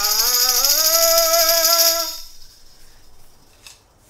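A man's voice sings a note that glides up and is held, over a tambourine shaken without pause. Both stop together about two seconds in, followed by quiet and a couple of faint taps.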